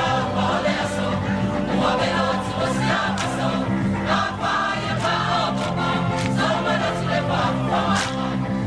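A large Samoan performing group singing a siva song together in chorus, steady and full throughout.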